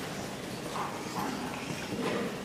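Lecture hall room noise during a pause: a steady hiss with faint scattered shuffling sounds.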